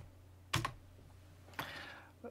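A computer keyboard key pressed once with a sharp click about half a second in, accepting a code-editor autocomplete suggestion, followed by a softer, brief hiss near the end.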